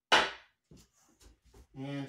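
A hooked wooden cane striking something hard once with a single sharp knock that dies away within half a second.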